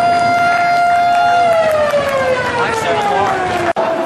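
Ice rink's electric end-of-period horn sounding one steady tone, then winding down in pitch for a little over two seconds, over crowd chatter.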